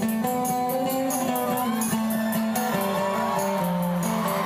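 Live band music: guitar and keyboard playing held notes over a drum kit's steady cymbal beat.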